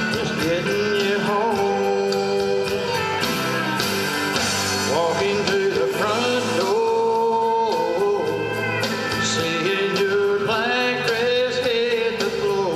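A man singing a slow country song through a microphone over instrumental accompaniment with a steady beat, holding long, wavering notes.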